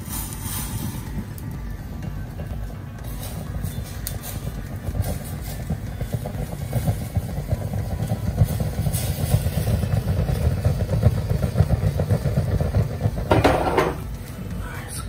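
Vodka flambéing: alcohol burning off in a ladle held over a gas burner flame and over the pan of sauce, a low rumble of flame with crackling. It grows louder through the second half, with a brief louder flare near the end.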